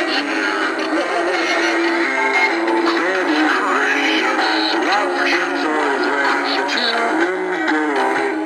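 Animated singing Santa figure playing a recorded Christmas song, a voice singing over music, with little bass.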